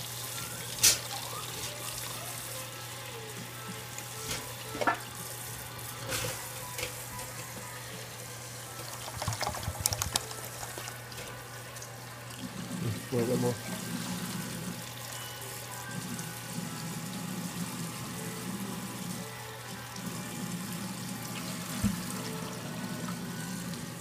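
Water running from a kitchen faucet into a plastic bottle, with a few light clicks and knocks of the bottle. In the second half, water glugs out of the tipped bottle into a smoker's water pan.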